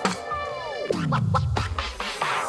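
Background music with DJ-style scratching: a sharp hit, then a tone sliding steeply down in pitch, and a few quick scratches.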